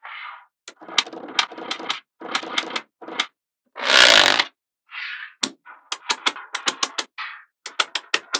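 Small neodymium magnetic balls clicking and snapping against each other as they are placed and shifted on a sheet of balls, in quick runs of sharp clicks, thickest in the second half. About halfway through comes the loudest sound, a brief rushing scrape as a card is slid under the sheet of magnets.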